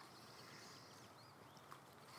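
Near silence outdoors: faint distant birds chirping, with a single light tap near the end as the drinking glass is set down on the table.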